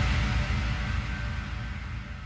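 The last chord of a trance dance track dying away after the music stops, a low bass-heavy tail fading out steadily.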